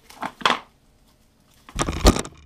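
A small box wrapped in plastic film being handled: a brief crinkle of the wrapping about half a second in, then a louder crinkle and a thump near the end as it is turned over on the wooden table.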